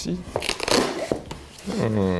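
Cardboard mailer box being opened by hand: rustling and scraping of the flaps, with a few short clicks, between brief bits of voice.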